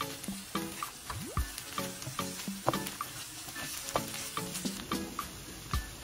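Minced meat and onions sizzling in a nonstick frying pan, with a wooden spoon scraping and turning them in short strokes. Light background music plays alongside.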